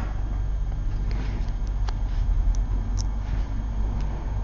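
A steady low hum, with a few faint, light clicks scattered through it.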